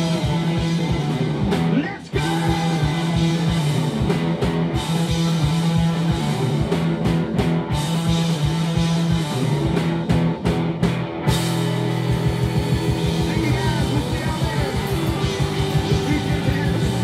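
Live rock band playing loud: three electric guitars, bass and drums driving a steady beat, with a short break about two seconds in.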